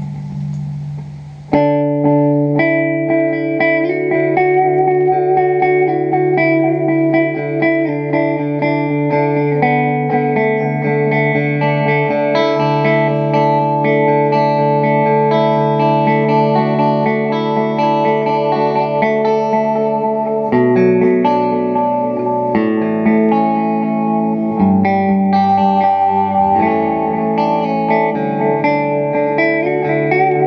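Electric guitar played through a Fender Super-Sonic amp and an analog delay pedal. The delay is in quarter-note mode at a tapped tempo, so each sustained note and chord repeats and layers over the next. The playing comes in fully about a second and a half in.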